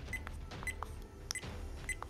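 SJ4000+ action camera's button-press beeps: four short, high beeps about half a second apart as its menu buttons are pressed.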